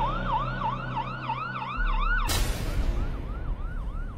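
A siren yelping in a fast rise-and-fall about three times a second. Just past two seconds in, a sudden burst of noise cuts across it, after which the siren carries on more faintly.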